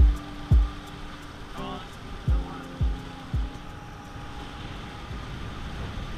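Steady rushing noise of a boat under way, with wind, wake and the outboard motor. Over it come deep bass-drum hits from a music track: two at the start, three more a couple of seconds in, and a fainter one later.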